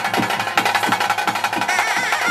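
Ritual drum accompaniment: a double-headed drum beating steadily about three strokes a second under a dense rattle of rapid high clicks. Near the end a reed pipe comes in with a wavering, sliding melody.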